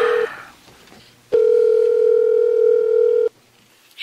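Telephone ringback tone: a steady single-pitch tone, the tail of one ring, a short gap, then a second ring of about two seconds that cuts off sharply, as an outgoing call rings before it is answered.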